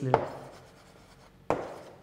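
Chalk writing on a blackboard: two sharp taps as the chalk strikes the board, one just after the start and one near the end, each followed by a fading scratch of the stroke.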